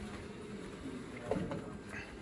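Hotel delivery robot rolling across carpet, its drive motors giving a faint hum over a low rumble, with a couple of knocks about a second and a half in.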